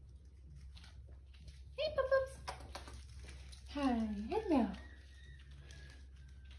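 A woman's high, sing-song voice makes two short wordless sounds, the second a drawn-out coo that rises and falls, over faint light tapping.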